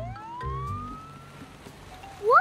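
Dubbed-in fire engine siren sound effect: one slow wail rising in pitch over about a second and a half, then fading out.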